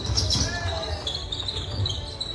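Basketball game play in a large gym on a wooden court: thuds of feet and ball on the floor, shoe squeaks, and players' and spectators' voices carrying in the hall. A short squeak comes about half a second in.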